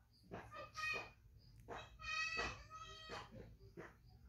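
Two high-pitched animal calls: a short one about a second in and a longer one around two seconds in.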